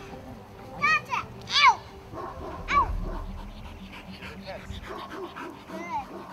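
A trained protection dog barking at a decoy: three short sharp barks in the first three seconds, then quieter sounds of the dog.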